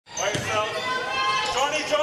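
A basketball being dribbled on a hardwood court, with people's voices calling out over it.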